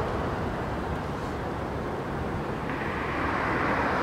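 Steady road-traffic noise, an even low rumble with no distinct events, growing a little louder near the end.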